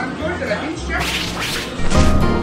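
A swish transition sound effect about halfway through, over background music.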